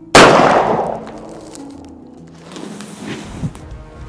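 A single shot from a long-barrelled revolver, a sharp crack that trails off over about a second, with background music underneath.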